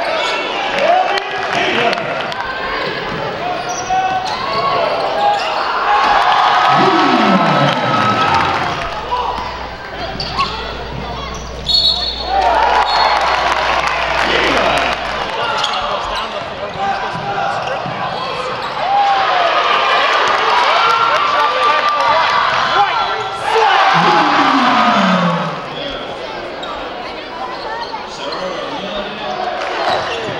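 Live basketball game sound on a hardwood court: the ball bouncing as players dribble, sneakers squeaking on the floor, and voices from players and the crowd.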